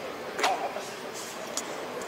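Steady mechanical background noise, like a vehicle engine running, with a single sharp knock about half a second in.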